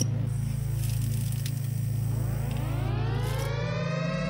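Intro music bed: a steady low synthesizer drone, with a rising sweep of tones building up through the second half.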